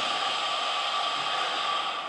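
Hookah water bubbling in a steady, hissing rush as a long draw is pulled through the hose, cutting off near the end.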